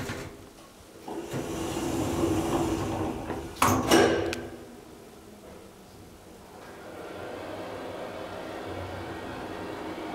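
Elevator doors sliding shut and closing with a sharp bang about four seconds in. From about six and a half seconds a steady hum follows as the KONE hydraulic elevator car begins to travel down.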